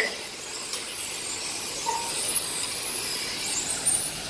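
Several radio-controlled touring cars racing on an asphalt track, their motors giving faint high-pitched whines that rise and fall as the cars accelerate and brake.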